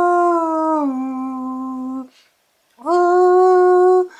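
A man's unaccompanied voice singing long wordless held notes: the first slides down in pitch and stops about halfway through, and after a short pause a new note is held.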